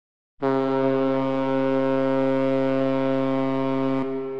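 After a moment of silence, one loud low note starts suddenly about half a second in and holds at a steady pitch, rich in overtones.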